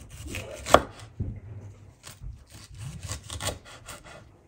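Chef's knife slicing a green bell pepper on a wooden cutting board: an irregular run of crisp cuts and knocks of the blade on the wood, the loudest a little under a second in.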